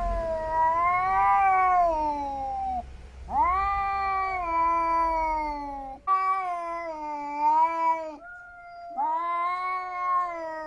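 Domestic cats in a standoff, caterwauling: four long, drawn-out yowls, each two to three seconds, that rise and then fall in pitch, with a lower, steadier call before the last one. This is the threat yowling of cats squaring up before a fight.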